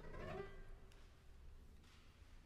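Grand piano strings played directly inside the case rather than from the keyboard: a brief, faint cluster of ringing pitches that dies away within about a second, with a small click near the end of the decay.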